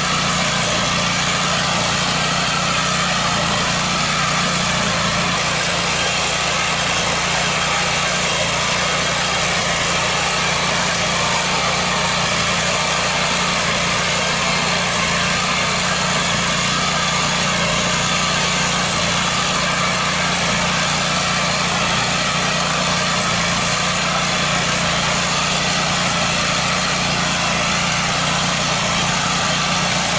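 The small engine of a walk-behind reaper-binder running steadily while the machine cuts rice and ties it into sheaves.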